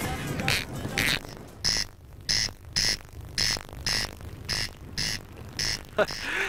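Corncrake calling: a dry, rasping call repeated evenly, about two a second.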